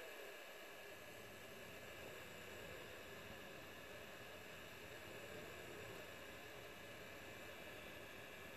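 Faint steady hiss of a hot air rework gun blowing onto a circuit board, reflowing solder paste under small surface-mount capacitors.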